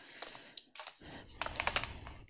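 Strips of small plastic diamond-painting drill containers clicking and clattering against one another and the table as they are moved aside, with a denser run of clicks in the second half.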